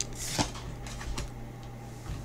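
Pokémon trading cards being handled as a hand flips from one card to the next, giving a few soft clicks and slides of card stock. A steady low hum runs underneath.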